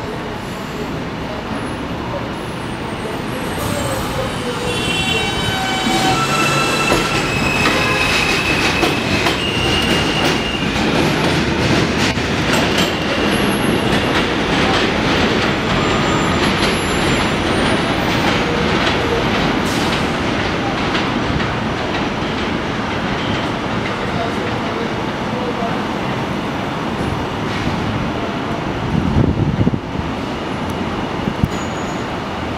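R160 subway train pulling out of an elevated station and accelerating away, its wheels rumbling and clattering on the rails. Short high whining tones sound as it gets up to speed. The noise builds over the first few seconds and then holds steady.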